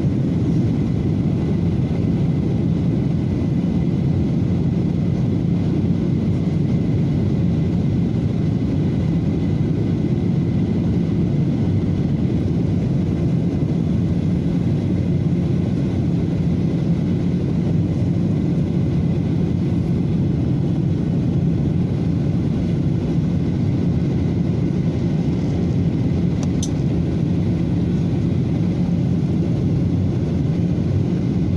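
Steady cabin drone of a Boeing 737 airliner heard from a window seat beside the wing: jet engine and airflow noise with a steady low hum, while the aircraft descends toward landing. One faint brief tick about 26 seconds in.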